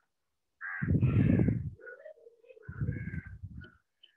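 Loud, harsh animal calls: two long calls about two seconds apart, the first the loudest, joined by a wavering tone.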